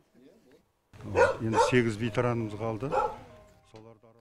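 An elderly man's voice speaking briefly, starting about a second in and lasting about two and a half seconds, with no clear words.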